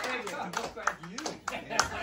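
Scattered hand-clapping from a few people, mixed with voices calling out, right after a jam tune ends in a small room.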